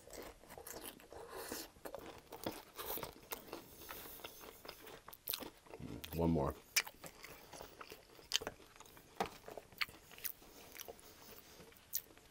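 Close-miked chewing of chili cheese nachos: tortilla chips crunching and crackling between the teeth, with wet mouth sounds. A short vocal sound from the eater comes about halfway through.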